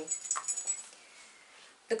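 A dog scratching itself, its collar tags jingling lightly for under a second, then quiet room tone.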